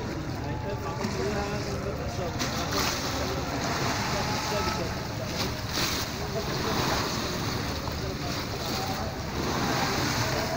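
Sea water of the Bosporus washing and splashing against the shoreline's edge in surges, over a steady rumble of wind on the microphone.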